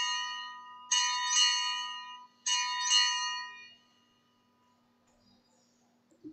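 Altar bells rung at the elevation of the chalice after the consecration. One ring is already sounding, and two more follow about a second and a half apart. Each rings out bright and clear and fades away, with all gone by about four seconds in.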